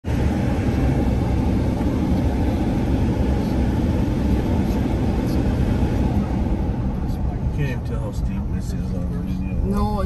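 Steady road and engine rumble inside a moving car's cabin. A person's voice starts to be heard a few seconds before the end.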